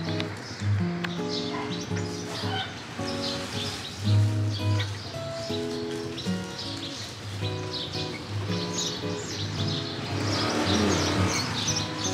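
Background instrumental music with a repeating bass line, with birds chirping over it, busiest near the end.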